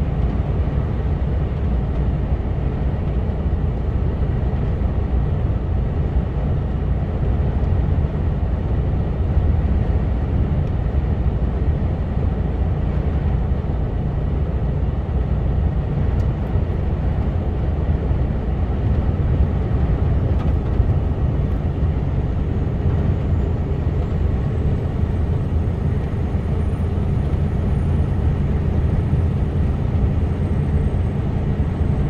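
Steady cab drone of a Mercedes Actros lorry cruising on the motorway: diesel engine and tyre and road noise heard from inside the cab, heaviest in the low end and unchanging throughout.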